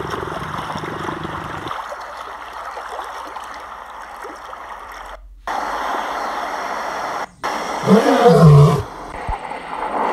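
A male lion gives one loud roar near the end, about a second long, its pitch rising and then falling; steady background noise fills the seconds before it.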